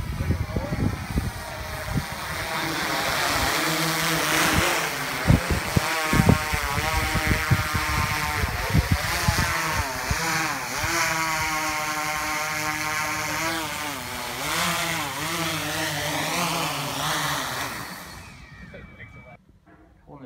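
DJI Inspire quadcopter's rotors buzzing as it hovers and manoeuvres close by, the pitch wavering up and down as the motors change speed. Wind bumps on the microphone in the first few seconds, and the buzz fades out near the end.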